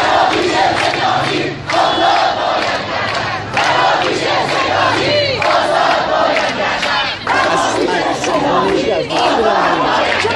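A large crowd of protesters shouting slogans together in repeated phrases, with brief breaks between phrases every couple of seconds.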